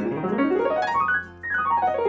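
Piano playing a fast run of notes up the keyboard, then running back down in the second half, like a warm-up glissando.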